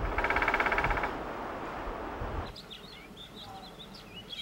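A woodpecker's rapid rattle of about fifteen even pulses lasting about a second. From about two and a half seconds in, faint high bird chirps follow.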